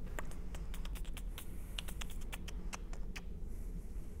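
Typing on a computer keyboard: a quick, irregular run of light key clicks that stops about three seconds in, over faint room hum.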